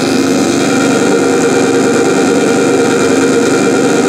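A loud, harsh, steady electronic drone on the soundtrack: a dense, noisy synthesizer chord held without change.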